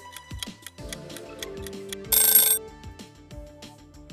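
Background music with a steady ticking beat. About two seconds in, a loud ringing bell-like sound effect lasts about half a second: the time-up signal as a quiz countdown timer runs out.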